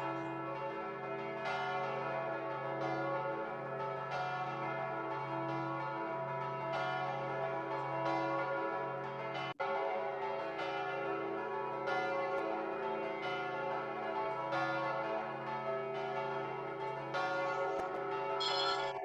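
Church bells pealing: several bells of different pitches striking over and over, their rings overlapping into a continuous peal, with a momentary break in the sound about halfway through.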